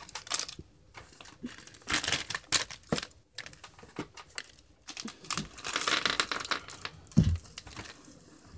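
Clear plastic candy bag crinkling and rustling in irregular bursts as it is cut open with scissors and handled. A single sharp thump comes near the end.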